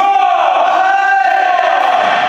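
One long, high-pitched shout from a badminton player celebrating a won point, swooping up sharply at its start and then held for about two seconds.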